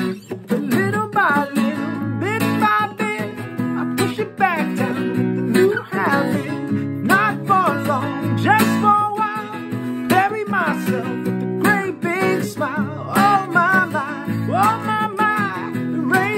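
A man singing with his own acoustic guitar accompaniment, the voice carrying a sustained, wavering melody over the guitar.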